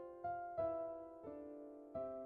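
Quiet background piano music: slow notes struck about every half second to a second, each ringing and fading.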